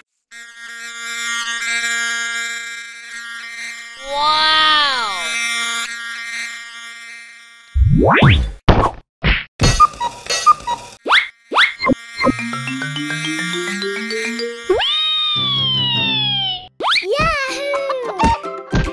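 Cartoon sound effects over a light children's jingle: a falling whistle-like tone, then a run of quick rising sweeps and sharp knocks, a rising scale of notes, and a long falling slide near the end.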